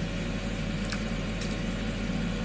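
Steady low background hum, with two faint clicks a little after the middle.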